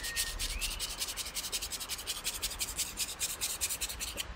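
A paintbrush scrubbing rapidly back and forth in short, even scratchy strokes, about eight a second, as tempera paint is worked.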